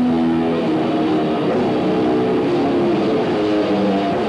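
Heavy metal band playing live: loud distorted electric guitar and bass chords, held notes shifting every half second or so, with no vocals.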